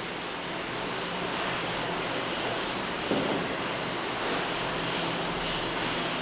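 Steady hiss of room tone and microphone noise, with a faint brief sound about three seconds in.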